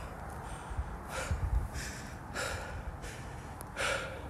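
A person breathing hard while walking through the woods, a short breath about every second and a quarter, over a low rumble of walking and phone handling.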